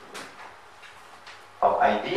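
A quiet pause with a faint short noise near the start, then a man's voice starts speaking loudly about a second and a half in.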